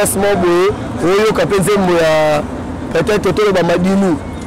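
A man speaking at length.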